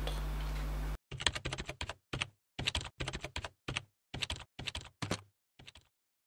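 Keyboard typing sound effect: rapid keystroke clicks in short, irregular bursts, starting about a second in and stopping shortly before the end.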